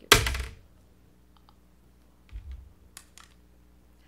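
A powder compact being handled close to the microphone: a loud, short clack right at the start, then a few light clicks and a dull thump about two and a half seconds in.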